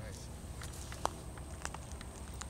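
A few light clicks and taps from handling the fastenings of a canvas bell-tent door, the sharpest about a second in, over a low steady rumble.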